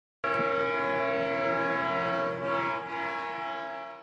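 A train horn sound effect: one long, steady chord that starts just after the beginning and fades out near the end.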